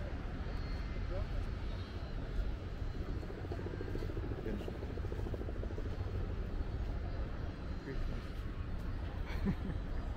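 Outdoor city ambience: a steady low rumble with faint voices of people nearby. There is a short laugh near the end.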